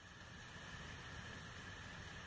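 Faint steady hiss of room tone with a faint steady high whine, and no handling sounds.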